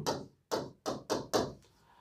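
A few short taps of a pen on a writing board, about a third of a second apart, as a stroke is drawn.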